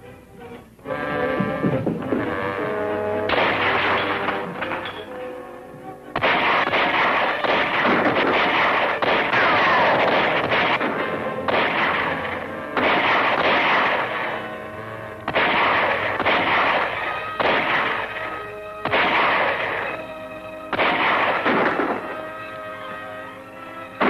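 Gunfight from a 1940s Western soundtrack: rapid rifle and pistol shots over an orchestral film score. The shooting comes in loud bursts, heaviest from about six seconds in.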